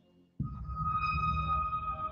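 Documentary score music: a low rumbling drone with a steady high tone held over it, cutting in abruptly about half a second in.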